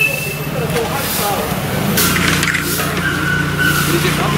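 Steady low hum of a vehicle engine running, with people talking in the background.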